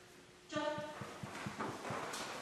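A bearded collie galloping across the floor, its paws landing in a quick even run of soft low thuds, about six a second.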